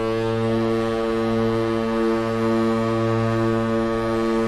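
San Francisco 49ers stadium touchdown horn sounding one long, deep, steady blast.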